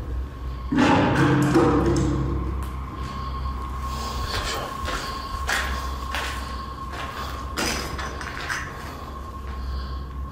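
Scattered knocks and clatters on a hard floor in an empty concrete room, over a thin steady high hum. About a second in there is a brief, louder pitched sound like a moan or a voice.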